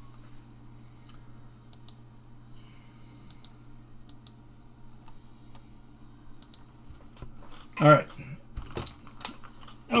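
Scattered, irregular light clicks of computer keyboard keys over a steady low electrical hum.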